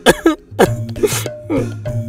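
Background film score with a steady low tone, over which a man makes two short, breathy vocal noises about a second apart, cough-like sounds, along with a few brief voiced sounds.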